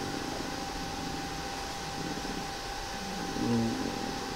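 Steady background hiss of room tone with a faint steady whine, and a short hesitant 'uh' from the man about three and a half seconds in.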